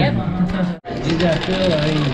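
People talking at a table. The sound cuts out for an instant just under a second in.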